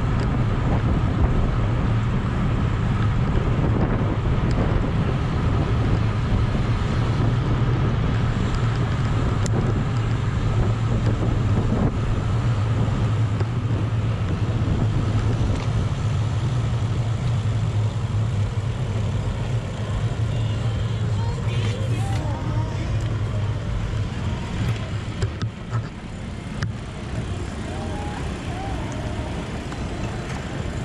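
Wind rushing over the camera microphone and tyre noise from a road bicycle riding at speed in a group: a steady low rush that eases in the last several seconds as the ride slows.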